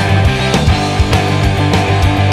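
Ska-punk band playing an instrumental passage on electric guitar, bass guitar and drums, with drum hits falling regularly about every half second.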